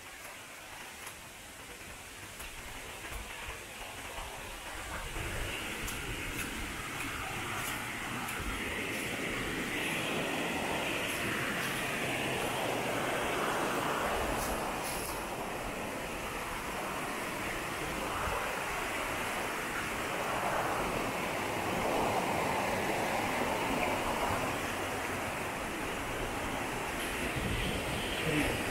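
Stream water rushing down a cascade over granite boulders: a steady rushing hiss that grows louder over the first ten seconds or so, then holds.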